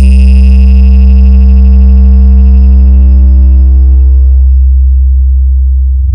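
Very loud electronic hard-bass tone from a DJ competition mix. It is struck sharply at the start and then held, a deep sustained bass under a stack of higher overtones that die away after about four and a half seconds while the bass carries on.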